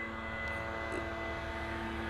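A steady mechanical hum made of several constant pitched tones over a low rumble.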